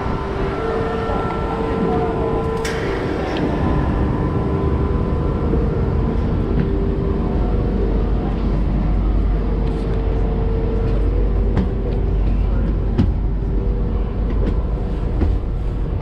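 Renfe Class 450 double-deck electric commuter train standing at the platform: its onboard equipment hums steadily, with a deep rumble that swells a few seconds in, and a few sharp clicks and knocks from the doorway and floor.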